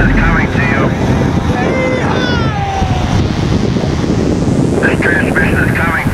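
A van speeding down a runway, its noise mixed with wind buffeting the microphone, while onlookers shout. One long falling whoop comes about two seconds in.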